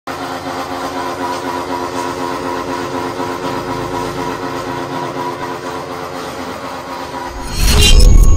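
TAKYO TK150 stainless-steel feed pellet mill running under load as it presses feed into pellets, its belt-driven electric motor giving a steady hum with several even tones. Near the end a sudden, much louder rushing sound with a deep rumble cuts in.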